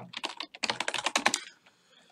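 Typing on a computer keyboard: a quick run of keystrokes lasting just over a second, stopping before the end.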